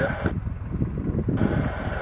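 Wind rumbling on the microphone, with a radio's background hiss that drops out abruptly for about a second and then returns.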